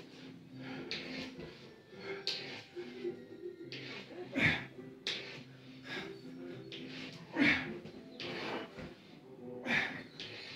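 A man breathing hard through wide push-ups, a sharp, hissy breath every second or two, the loudest about halfway through and near the end, while a children's show's music plays in the background.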